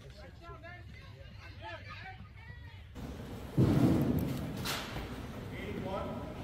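Faint chatter of distant voices, then about three and a half seconds in a loud, dull thump that fades over half a second, followed about a second later by a sharp crack.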